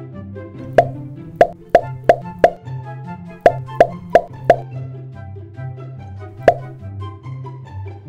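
Cartoon 'boop' pop sound effects, ten in all: a quick run of five, then a run of four, then one more. They play over light background music with a steady bass line.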